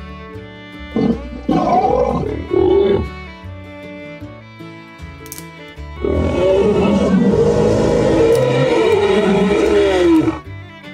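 Dinosaur roar sound effects over background music with bowed strings: a couple of short roars between one and three seconds in, then one long roar from about six seconds in to the end.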